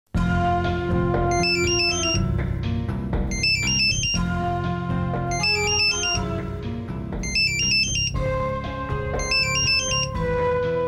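Mobile phone ringtone: a short electronic melody of high stepped beeps, repeating about every two seconds, over background music with a steady bass line.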